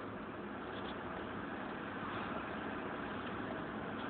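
Steady engine and road noise heard inside the cabin of a moving car, with no change in pitch or level.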